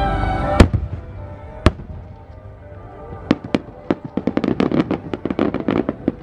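Aerial firework shells bursting. Two sharp, loud bangs come in the first two seconds, then from about three seconds in a rapid string of reports as a volley of small shells pops in quick succession.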